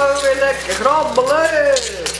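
A woman's voice drawn out in long, sliding vowels, like an exaggerated sung exclamation.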